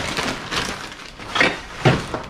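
Black plastic trash bag rustling and crinkling as gloved hands dig through the junk inside, with a few short clatters from items knocking together.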